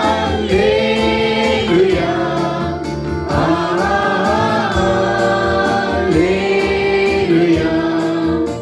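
A small worship group of women and a man singing a gospel song together into microphones, in long held phrases, over instrumental accompaniment with a steady beat.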